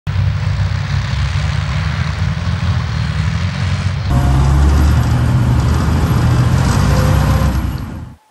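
Tracked armoured vehicles driving over open ground, engines running with a heavy low sound and a noisy clatter above it. It changes abruptly and gets louder about four seconds in.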